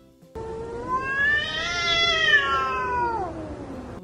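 A cat's single long, drawn-out meow that rises in pitch and then slides down as it fades near the end.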